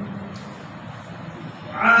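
A breath pause in a man's Quran recitation through a microphone: a held chanted note ends at the start, then a steady low hiss of room and sound system, and his chanting voice comes back in near the end.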